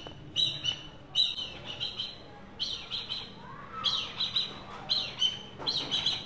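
Black kite calling: a string of short, high chirps, often in pairs, about ten in all.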